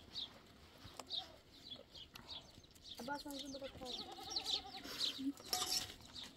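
A young goat bleating: one long, wavering call that starts about three seconds in and lasts about two seconds.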